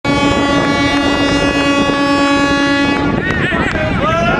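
A horn sounding one steady low note, cutting off about three seconds in, then voices shouting.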